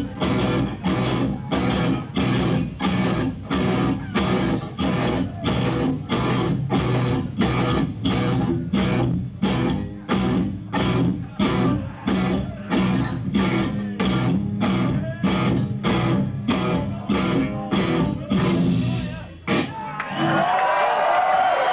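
Three-piece rock band of electric guitar, bass guitar and drums playing live. It pounds out a heavy repeated riff with hard accents about twice a second, ending with a last hit near the end.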